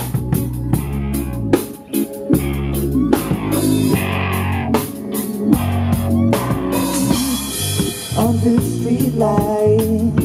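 A live band plays an instrumental passage on electric guitars, bass guitar and a full drum kit, with steady drum hits over held bass notes.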